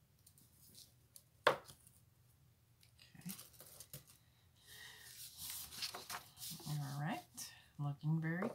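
Paper and a translucent plastic sticker sheet being handled: rustling and crinkling from about three seconds in, growing busier toward the end. A single sharp click about a second and a half in is the loudest sound, and a short bit of voice comes near the end.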